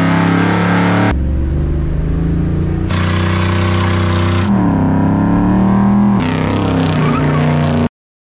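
Muscle car engines held at high revs during burnouts, in a string of short clips that cut abruptly from one to the next, with the revs dipping and rising once in the middle. The sound stops suddenly near the end.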